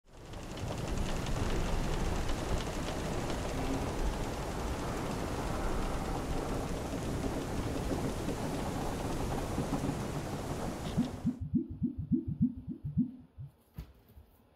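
Rain and thunder, as in a thunderstorm sound effect, running loud and steady and then cutting off suddenly about eleven seconds in. A quick run of low pulses follows, about five a second, fading out just before the end.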